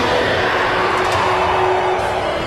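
A loud rushing sound effect from an anime soundtrack. It swells just before this moment and slowly fades away, with a low music note held beneath it.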